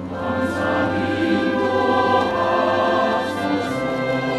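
Mixed church choir singing a hymn in Korean in several voice parts, holding long sustained chords; a new phrase begins at the start.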